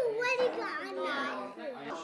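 Young children's high-pitched voices talking and calling out, with words too unclear to make out.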